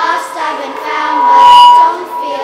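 Children singing with ukuleles strumming along. About a second in, a loud, steady high note swells and then falls away just before the end.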